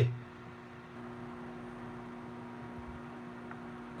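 Steady low hum with a faint hiss: room tone with no other sound standing out.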